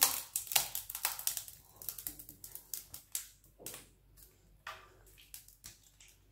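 Quick irregular clicks and scrapes of a utensil against a stainless steel saucepan as thick cooked custard is scraped out of it. The clicks come thickly in the first second or so, then more sparsely.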